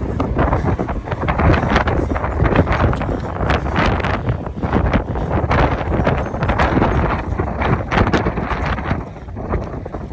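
Wind blowing across the microphone, a loud, gusty rumble and rush that eases near the end.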